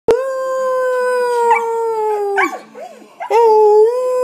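Husky-type dog howling: one long howl that falls in pitch at its end, a brief pause, then a second howl starting about three seconds in.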